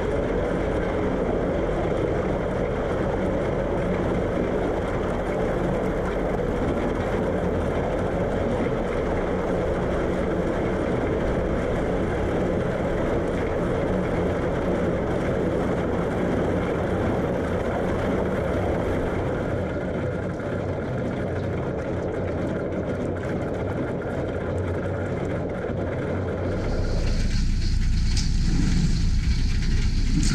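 Narrowboat engine running steadily as the hull pushes through thin canal ice, with the crunch and crackle of the ice breaking against the hull. Near the end the sound turns brighter, the crackle coming more to the fore.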